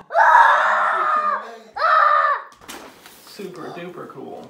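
A young child screaming twice: one long high-pitched scream, then a shorter one, each dropping in pitch as it ends. Quieter voices follow.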